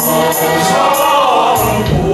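Male vocal ensemble singing a Sichuan boatmen's work chant (chuan gong haozi), several voices sounding together in harmony with lines sliding in pitch.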